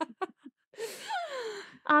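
A woman's laughter trailing off in a few short pulses, then a long, breathy sigh that falls in pitch.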